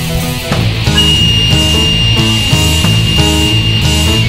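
Folk black metal with guitars, bass and drums building up about half a second in. From about a second in, a single high flute note is held steady over the band.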